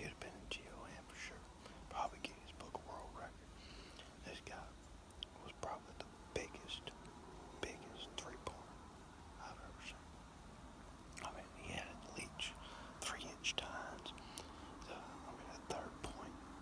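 A man whispering, in short hushed phrases with soft lip and mouth clicks.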